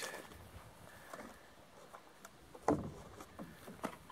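A few faint clicks and knocks from handling things, the sharpest about two and three-quarter seconds in, over a quiet outdoor background. No shot is fired.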